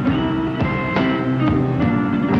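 Blues band playing: guitar among the instruments, over a steady beat that lands about twice a second.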